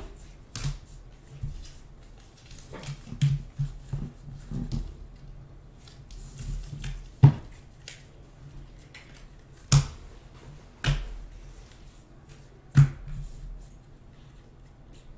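Stack of baseball trading cards being thumbed through in the hands: soft rustling with several sharp card clicks spaced a second or more apart.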